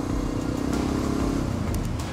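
Honda NX650 Dominator's single-cylinder 650 engine running steadily while the motorcycle rides along, heard from the handlebar camera; its note eases off about a second and a half in.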